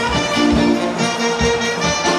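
Live band playing up-tempo music, with trumpet and saxophone carrying held notes over regular drum hits.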